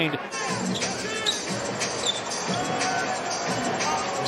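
Basketball game ambience in the arena: a basketball dribbled on the hardwood court with short knocks, faint voices, and background arena music.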